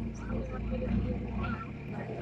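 People talking, with a low steady hum underneath.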